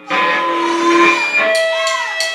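Electric guitar starting suddenly and loud, holding ringing notes that bend slightly in pitch, with a few short sharp hits near the end.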